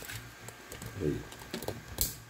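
Scattered light clicks and taps from objects being handled on a workbench, over a low steady hum.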